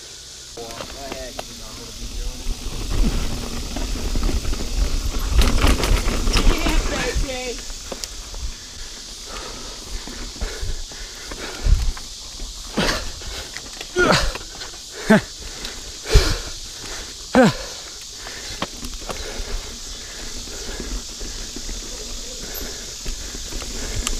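Mountain bike riding down a dirt singletrack, heard from a camera on the bike or rider. Wind and tire rumble swell for a few seconds early on. Then come a run of sharp knocks and rattles as the bike hits bumps and roots, about once a second for several seconds around the middle.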